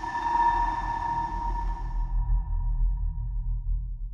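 Logo sting sound effect: a single bright ringing ping that fades out over about three seconds, over a deep, pulsing bass rumble.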